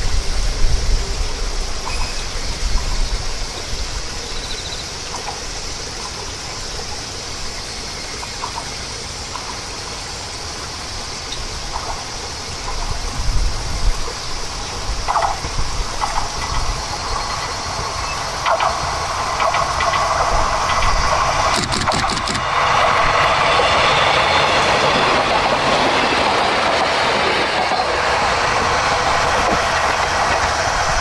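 A KiHa 200-class diesel railcar approaching and passing along the line, its engine growing steadily louder. A quick run of wheel clicks over rail joints comes about two-thirds of the way through, and the railcar is loudest near the end as it goes by.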